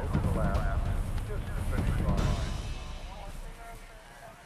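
Indistinct voice of the course commentator over a low rumble, fading away over the last second or two.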